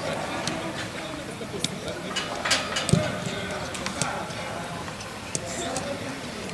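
Players' voices talking in the background, with a few sharp knocks and one louder thump about three seconds in, from footballs being struck.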